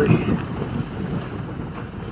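BMW roadster driving slowly, a steady low rumble of engine and tyres on a cobbled street.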